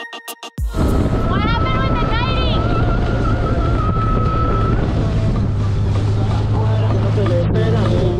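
Music cuts off suddenly under a second in. Then a dinghy's outboard motor runs at speed, a steady low hum under wind and water noise. Over it a man yells, one long wavering cry during the first few seconds.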